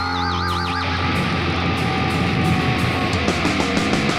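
Heavy metal band playing a distorted electric guitar riff over drums and bass. It opens with a high note wavering in wide vibrato for under a second.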